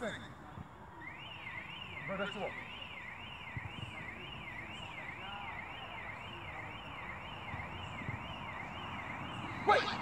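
An electronic siren tone, its pitch sweeping up and down about twice a second, starting about a second in and running on steadily.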